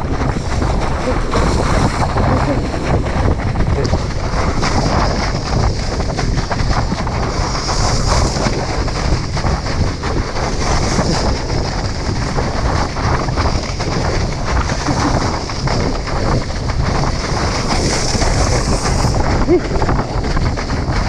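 Wind buffeting the microphone of a water skier towed at speed behind a motorboat, with the hiss of water spray off the skis swelling now and then.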